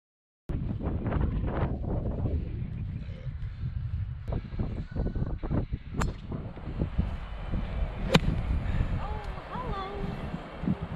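Wind buffeting the microphone, with the sharp crack of a driver striking a golf ball about eight seconds in. A smaller click comes about two seconds before it.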